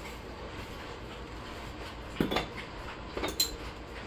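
A glass beer bottle being opened on a magnetic wall-mount bottle opener with a cap catcher: a short clunk about two seconds in, then a bright metallic clink about a second later as the cap comes off.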